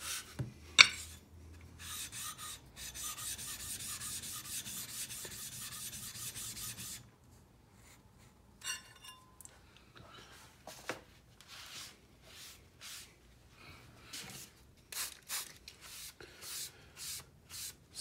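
A 300-grit diamond stone rubbed back and forth across a wet 4000-grit water stone to flatten its face, a steady gritty scraping for about five seconds. There is a sharp knock about a second in, then scattered light knocks and taps as the stones are handled.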